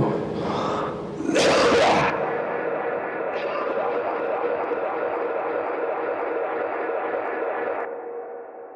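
A man's spoken phrase about a second in, then a sustained electronic drone of many held tones that rings on steadily; its upper tones drop away near the end.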